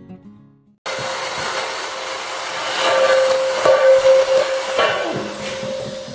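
Acoustic guitar music fades out, then after a brief silence a handheld power tool starts abruptly and runs steadily, with a hissing rush over a constant motor hum.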